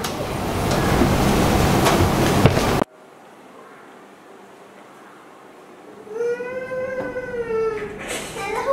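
Loud steady noise that cuts off suddenly about three seconds in, leaving quiet room tone. Near the end, a child's voice holds one long note.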